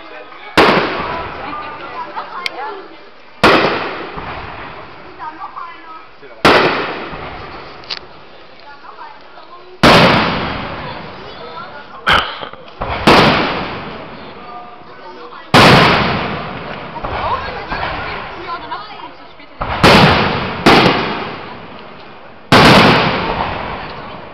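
Aerial firework shells bursting overhead: about ten loud bangs a few seconds apart, each trailing off in a long echoing rumble.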